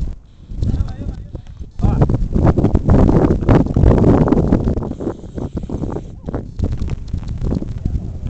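Outdoor football drill: players' voices calling out, with dull thuds of footballs being kicked, over a heavy low rumble.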